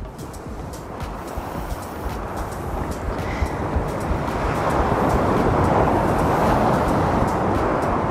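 Ocean surf washing up a sandy beach, the rushing water growing louder about halfway through and staying loud.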